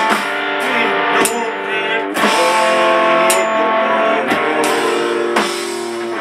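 A rock band playing a slow doom song: a Les Paul-style electric guitar rings out held chords over slow, spaced hits on an electronic drum kit, with a couple of sharp cymbal crashes.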